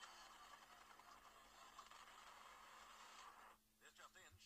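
Faint street-traffic noise from a cartoon soundtrack heard through a phone's small speaker: a steady rushing hiss that cuts off suddenly after about three and a half seconds, with a cartoon voice starting near the end.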